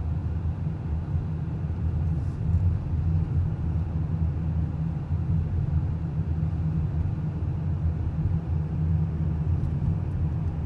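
Inside a moving car: steady low rumble of engine and tyre road noise as it drives slowly along a street.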